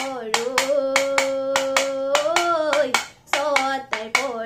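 A bamboo toka, a split-bamboo Bihu clapper, clacking in a steady beat about four times a second, with a short break near the end. Over it a girl sings a long held note that lifts briefly and then falls away.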